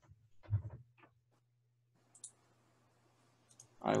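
A few scattered clicks and taps from a computer mouse and keyboard, with a faint steady low hum underneath; a voice starts a word right at the end.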